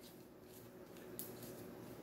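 Faint handling sounds of Play-Doh being squeezed and kneaded between the hands, with a small click about a second in.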